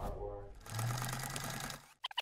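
Sewing machine stitching, with a short break about half a second in, then a steady run that stops just before the end.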